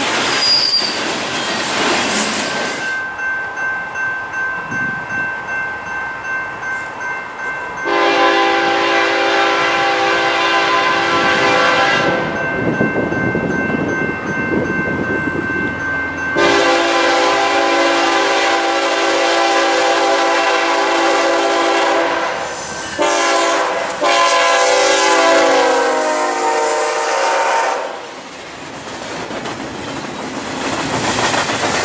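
A freight train's cars rumbling past, then a diesel freight locomotive's multi-note air horn sounding three long blasts as the westbound train approaches. The last blast drops in pitch as the locomotive passes close by, and then the double-stack container cars roll past.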